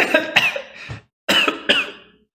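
A man's laughing coughs: short, breathy bursts from the throat in two bouts about a second apart.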